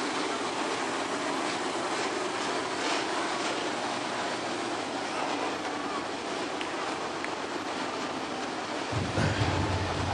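Dirt modified race car engine running on the track, heard from a distance as a steady, even noise.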